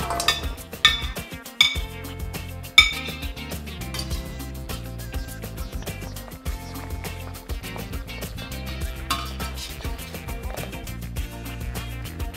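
Slotted metal spatula clinking against a ceramic plate and a steel wok as scallops are pushed into the pan: about four ringing clinks in the first three seconds. Background guitar music runs underneath.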